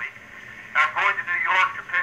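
Speech only: a man talking, with a short pause about a second long before he goes on.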